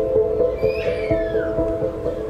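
Balalaika played solo, holding long sustained notes in the middle register. Between about half a second and a second and a half in, a brief high squeal falls in pitch over the music.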